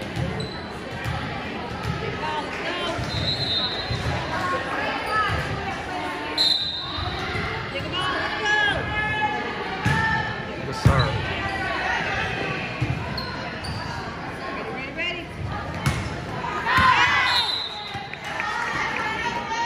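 Volleyball thumping as it is struck and bounces on a hardwood gym floor, echoing in the hall, with the sharpest hit about eleven seconds in. Spectators talk throughout, there are a few short high squeaks, and voices rise in a shout near the end.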